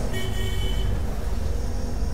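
A short, high-pitched horn-like toot lasting under a second near the start, over a steady low background rumble.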